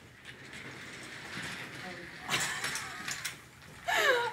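Office chair casters rolling as the chair is wheeled in: a steady rolling noise that grows louder about two seconds in.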